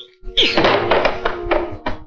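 Cartoon sound effect of a wooden plank being thrown off and toppling, heard over the film's music: a dense clatter of knocks with a falling swoop at its start, ending in one sharp knock just before the end.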